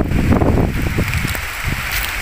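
Heavy rain falling with gusty wind buffeting the phone's microphone. The wind rumble eases a little after about a second, leaving a steady rain hiss.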